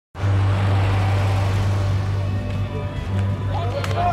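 A steady low hum over a noisy hiss, with voices starting to come in near the end.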